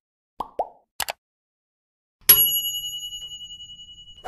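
Subscribe-button animation sound effects: two quick pops, then a double click about a second in, then a bright bell ding a little past two seconds whose high ringing fades away slowly.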